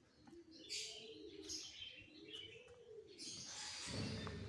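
Faint birdsong: doves cooing in low calls that rise and fall, with small birds chirping higher above them.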